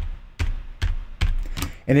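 A run of about five computer keyboard key clicks, evenly spaced a little under half a second apart, each with a light thud.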